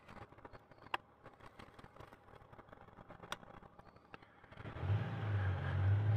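Faint clicks and rustling as a paper receipt is folded. About four and a half seconds in, a Honda Gold Wing's flat-six engine starts a low, steady hum as the motorcycle pulls away from a standstill.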